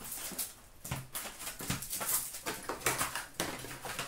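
Trading-card pack wrappers crinkling and tearing in irregular bursts as hockey packs are opened, with cards being handled.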